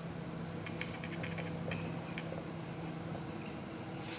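Quiet room tone with a steady high-pitched whine and a low hum, and a few faint scratches and ticks of a marker writing on a whiteboard in the first half.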